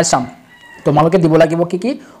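A man's narrating voice: a short syllable, a brief pause, then about a second of speech with drawn-out vowels.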